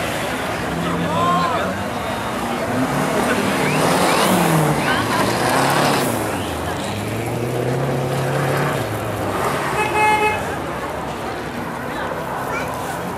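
Renault 5 GT Turbo's turbocharged four-cylinder engine revving up and down hard as the car is driven through turns on loose dirt, with rough tyre-and-dirt noise. A short car-horn toot about ten seconds in.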